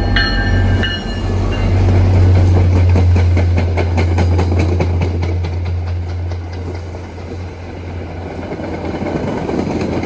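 MBTA diesel-hauled commuter train passing. The last of the locomotive's horn cuts off about a second in. The locomotive's diesel engine then drones loudly as it goes by, and the wheels click over the rail joints as the coaches follow, the engine sound fading in the second half.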